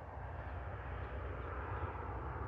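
Steady low outdoor rumble with a fainter hiss above it.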